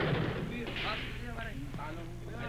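Gunfire from an action-film soundtrack, a loud noisy blast that fades out over the first half second, followed by people's voices.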